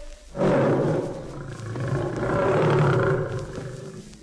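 A lion roaring once, drawn out for about three seconds and fading near the end.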